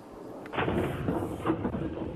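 Outdoor sound picked up by a Ring doorbell camera's microphone, starting about half a second in: muffled, dull street noise with a low rumble and faint voices.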